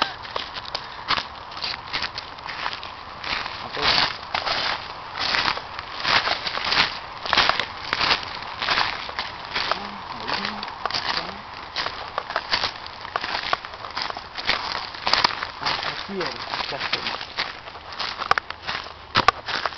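Footsteps crunching through dry fallen leaves, an irregular run of crackling steps as people walk over a leaf-covered forest floor.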